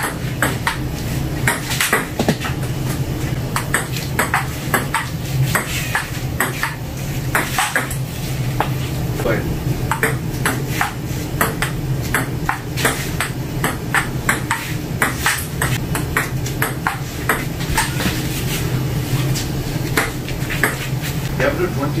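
Table tennis rallies: a celluloid ball clicking back and forth off paddles and the table top, a sharp hit every half second to second, over a steady low hum.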